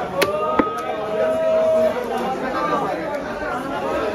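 Busy market chatter of several voices, with two sharp chops of a heavy knife on a wooden chopping block within the first second as a rohu fish is cut into steaks.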